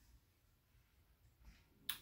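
Near silence: room tone, then a single short, sharp mouth click just before the end, a lip smack as the beer is tasted.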